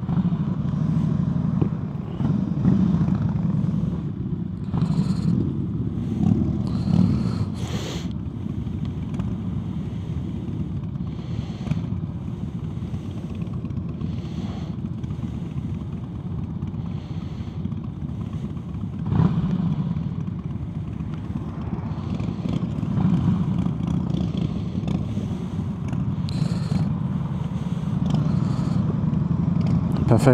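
A Harley-Davidson Heritage Softail's V-twin idling at a standstill, while other motorcycles ride past and swell the sound several times.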